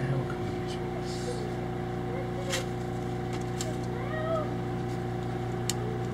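A steady mechanical hum made of several fixed tones, with a few faint, short rising-and-falling calls in the middle and a few light clicks.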